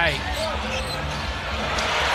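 A basketball bouncing on a hardwood court over steady arena crowd noise.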